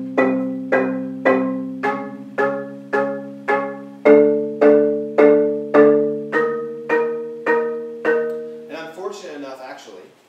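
Marimba with its resonators removed, played with four mallets in double vertical strokes. Two-note chords are struck together about twice a second, moving to a new chord every four strokes, and the notes sound dry. The strokes stop near the end and a man's voice starts.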